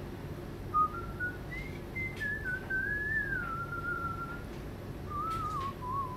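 A person whistling a tune. Single clear notes begin about a second in, step upward, slide through a longer wavering phrase, and end with a short phrase near the end.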